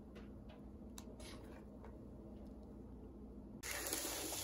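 Low room tone with a few faint soft clicks, then near the end a sudden loud scraping swish as a bundt pan on a placemat is slid across a wooden tabletop.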